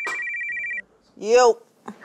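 Phone ringing with a steady two-note electronic trill that cuts off suddenly just under a second in as the call is answered, followed by a woman saying "Yo".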